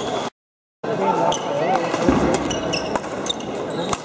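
Indoor badminton play: sharp racket-on-shuttlecock hits and short high squeaks, typical of court shoes on a sports-hall floor, over a background of voices. The sound cuts out completely for about half a second near the start.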